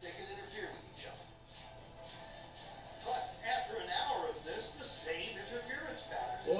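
Soundtrack of a projected animated video played back in the room: background music with a voice speaking over it.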